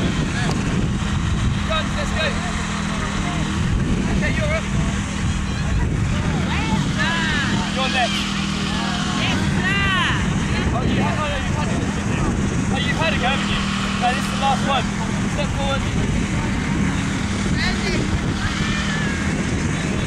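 Voices calling and shouting across an open playing field, loudest around the middle, over a steady low rumble and a constant low hum.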